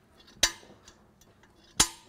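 Center punch snapping against the steel head of a structural pop rivet twice, about a second and a half apart, each a sharp metallic click with a brief ring, punching a starting dimple for the drill bit.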